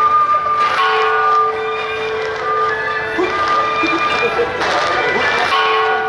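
Temple-procession music: a steady held drone with a melody of held notes moving above it, and noisy clashes about a second in and again near the end, over crowd voices.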